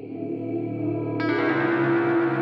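Electronic music playing back from a DAW session: effects-laden synth tones that start abruptly, with a brighter layer of falling sweeps coming in just over a second in.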